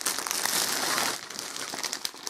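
Thin clear plastic wrapping crinkling as it is pulled off a new fabric bag. The crinkling is loudest in the first second or so, then trails off into softer crackles.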